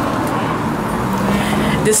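Steady road traffic noise, with faint voices in the background.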